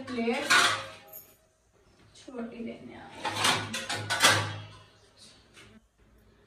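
Metal kitchen utensils and pots clinking and clattering, with a quick run of sharp knocks about three to four seconds in.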